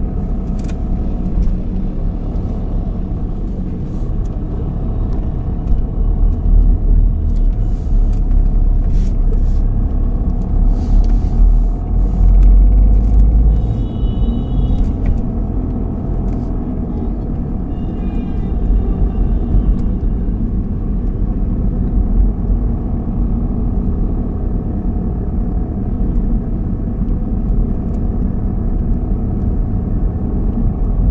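Car driving along a road: a steady low rumble of engine and tyre noise, swelling for several seconds in the middle.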